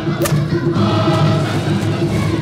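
Choral music: voices holding long, steady chords, with one brief sharp click about a quarter of a second in.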